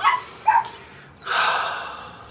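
A man's exasperated breaths: two short huffs, then a longer exhale like a sigh over a ruined part.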